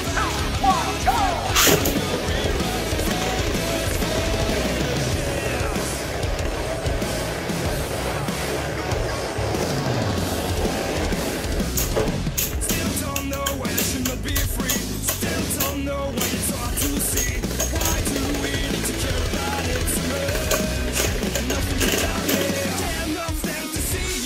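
Two Beyblade spinning tops whirring and grinding across a plastic stadium floor. A run of rapid clashes comes about halfway through. Background music plays throughout.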